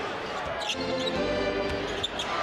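A basketball dribbled on a hardwood court, with arena music holding steady notes underneath.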